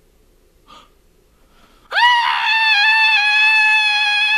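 A short intake of breath about a second in, then a man's loud, sustained scream starting about two seconds in. The scream swoops quickly upward and then holds one high pitch.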